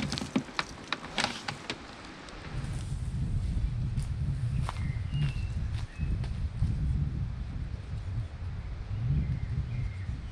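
Sharp clicks and rattles of a cable lock being handled and fastened around a kayak, then a gusting low rumble of wind on the microphone, with a few short bird chirps.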